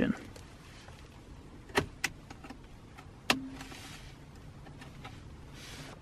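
Plastic locking clip of a wiring connector being released and the plug pulled from the side of a car radio unit: three small sharp clicks, two close together about two seconds in and one a little after three seconds, amid quiet handling.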